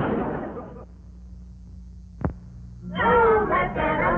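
The soundtrack fades out over the first second, leaving a low steady hum with a single sharp click about two seconds in; just before the end, music with a wavering melodic line starts up.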